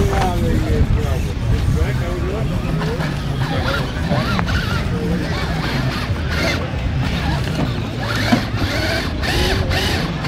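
Axial SCX6 1/6-scale electric rock crawler working its way up a boulder pile, its motor and geared drivetrain whining and rising and falling with the throttle, over a steady low rumble and background voices.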